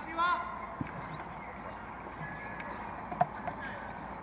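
A football player's short shout on the pitch just after the start, then a couple of brief knocks of the ball being kicked, the second about three seconds in.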